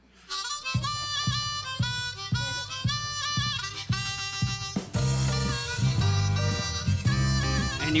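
Harmonica playing a stepping melody over a band backing of bass and a regular beat, starting suddenly just after the opening; the bass and beat grow fuller about five seconds in.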